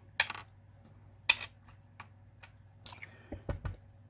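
Sharp clicks and taps of small hard plastic craft supplies, such as ink pads and a blending tool, being handled on a work table. There are about three distinct clicks, the loudest near the start and about a second in, with a few soft knocks near the end.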